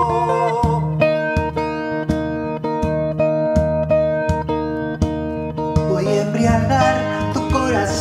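Acoustic guitar picking an instrumental passage between sung verses, over evenly spaced beats on a hand-played frame drum. A voice comes back in near the end.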